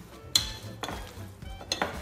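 A fork stirring a thick, wet mixture in a glass mixing bowl, with a few sharp clinks of the metal against the glass.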